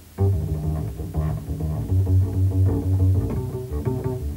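Acoustic double bass played pizzicato: after a brief pause, plucked notes come in loud about a quarter second in, then ring on as sustained low notes and chords.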